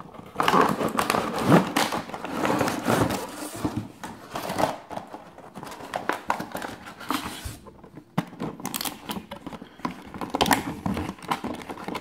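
Cardboard packaging and a thin clear plastic tray being handled during an unboxing: irregular crinkling, rustling and scraping with small clicks, dying down briefly about eight seconds in.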